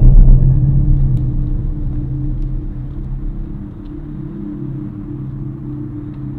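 A deep, loud low rumble, strongest at the very start and fading over the first few seconds, settling into a steady low hum.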